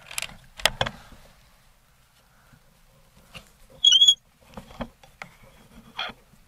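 Air Venturi Avenger Bullpup air rifle being handled: a few sharp clicks and knocks of its action in the first second. About four seconds in comes one short, high squeak, the loudest sound, followed by more light clicks.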